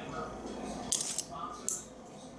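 Faint handling of small metal costume jewelry: two brief scraping rustles, about a second in and again near the end.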